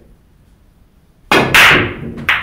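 Pool break shot on a racked set of ten balls. The cue tip cracks against the cue ball about 1.3 seconds in, and a fifth of a second later comes a louder crack as the cue ball hits the rack. A clatter of balls knocking together follows and dies away.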